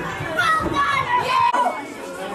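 Raised voices calling out at a football match, some of them high-pitched. The sound changes abruptly about one and a half seconds in.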